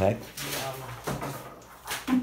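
A few short knocks and scrapes of things being handled on a desk, with voices in the room.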